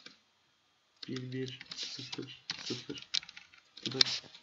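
Typing on a computer keyboard: quick runs of key clicks that start about a second in.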